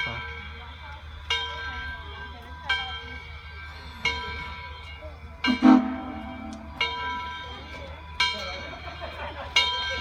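Steam locomotive bell on Southern Railway 2-8-0 No. 630 ringing slowly as the train approaches the platform, one clang about every one and a half seconds. About five and a half seconds in, a louder, sharper sound cuts across the ringing.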